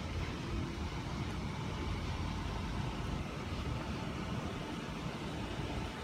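Steady low rumbling outdoor noise with no distinct events, the kind picked up by a phone carried outdoors.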